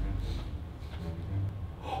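A person's brief gasp with faint voices behind it; the tail of a low music sting dies away in the first half second.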